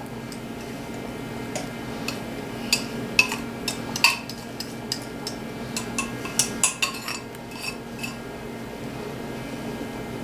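A metal knife scraping and tapping against the inside of a glass mixing bowl, knocking crumb topping out: a string of sharp clicks and clinks, thickest in the middle, over a low steady hum.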